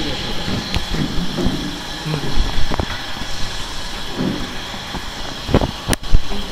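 Handling noise of a microphone being adjusted on a metal gooseneck stand: irregular bumps, rubbing and a few sharp clicks, the loudest near the end. A steady background hum runs underneath.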